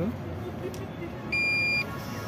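Card payment terminal with a chip card inserted, giving one steady electronic beep about half a second long, about one and a half seconds in: the usual signal that the chip has been read and the card can be removed. A faint click comes a little before it.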